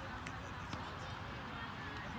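Faint voices of players and spectators across an open playing field, over a steady low rumble.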